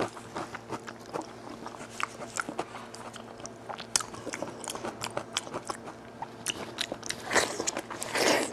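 Close-miked wet chewing and mouth clicks of someone eating spicy braised goat head meat, a string of short sharp smacks, with a longer, louder burst of noise about seven seconds in as more meat goes to the mouth.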